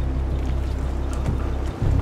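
Steady low rumble of a boat's engine with wind and water noise. It drops out for a moment near the end, then resumes.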